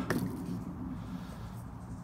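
A short click at the start, then faint rubbing and handling sounds as a small rubber hose is worked off its fitting on a car's air intake pipe, over a low steady hum.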